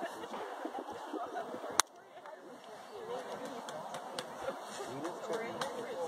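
A single sharp crack about two seconds in, the loudest sound here, over faint voices in the background.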